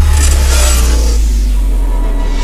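Cinematic intro sound design: a loud, deep bass rumble held steady, with a high whooshing swell that rises and fades in the first second.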